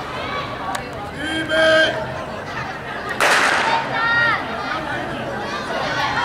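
A starting pistol fires once about three seconds in: one sharp crack with a short ring-out, which starts a race. A loud call comes just before it, and high-pitched voices shout after it over steady crowd chatter.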